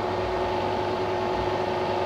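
Electric motor and custom permanent-magnet alternator set running steadily under load, powering glowing resistive heating elements: an even hum with a steady high whine.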